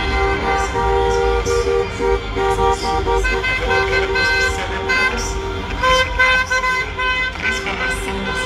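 Car horns honking again and again, several held tones overlapping, as a line of cars drives slowly past, over a low engine rumble; music plays along with it.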